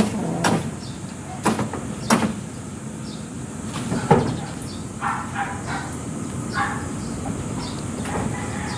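Weeds being torn out along a house roof's edge: a few sharp snaps and knocks in the first half, with several short animal calls later on.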